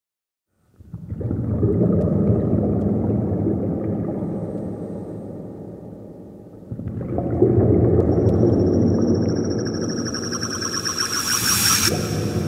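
Ambient soundtrack drone: a low sustained swell that fades, then swells again. The second swell is joined by a steady high whine and a hiss that builds near the end.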